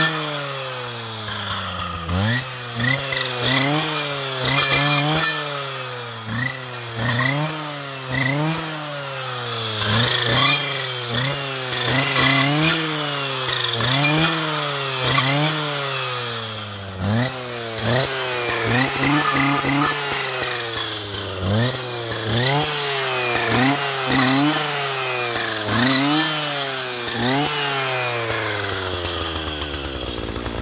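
Husqvarna 545RXT brushcutter's two-stroke engine, fitted with a saw blade, revving up and dropping back over and over, about once a second, as the blade cuts into brushwood stems. Near the end it settles to a steadier, lower idle.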